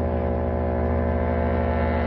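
Background film music: a low, sustained chord held steady, of the kind used for suspense.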